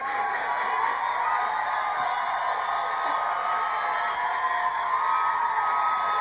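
Television studio audience cheering and whooping: a steady crowd noise with long held yells.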